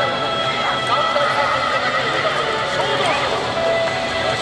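Yosakoi dance music playing over loudspeakers, with the dancers' high shouted calls sliding in pitch over it.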